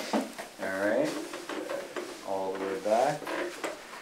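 Soft talking in a small room, with faint knocks and handling sounds as a person sits down in a chair.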